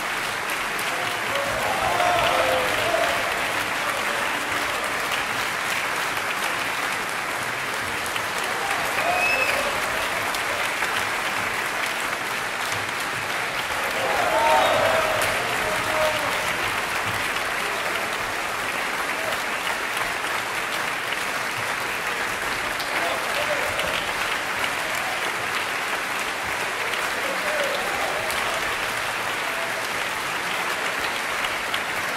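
Concert audience and orchestra applauding, a steady dense clapping, with a few voices calling out over it.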